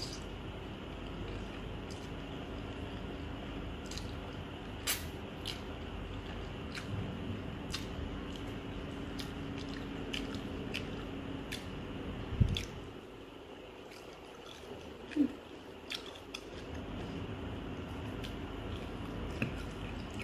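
A person eating chicken noodles with wooden chopsticks: soft chewing and slurping, with scattered small clicks of the chopsticks against the plate. A low background hum runs until a thump about twelve seconds in, after which it is quieter.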